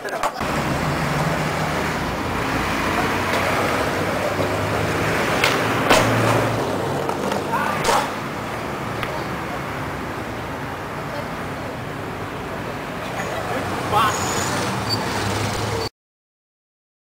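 Skateboard clacking on a concrete sidewalk a few times over steady street noise, the sharpest clacks about six and eight seconds in; the sound cuts off suddenly at the end.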